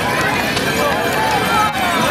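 A line of horses galloping together across a dirt track in a tbourida charge, their hoofbeats under many voices shouting and calling at once.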